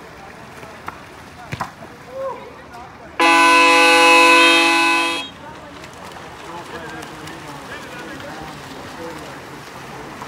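Water polo game horn sounding once, a loud steady buzzing tone that lasts about two seconds and stops abruptly. It comes just after a six-second warning was called, so it marks time running out on the clock.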